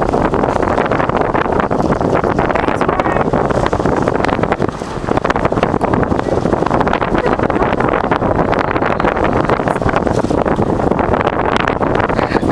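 Wind buffeting the microphone, loud and steady, over the rush of water past the bow of a moving boat, with a brief lull about five seconds in.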